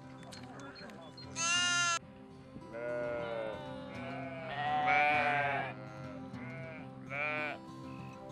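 Sheep bleating over background music: five calls, a short high one about a second and a half in, the longest and loudest around five seconds, each with a quavering pitch.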